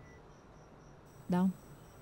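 Faint crickets chirping in an even, rapid pulse, with one short spoken word from a woman about a second in.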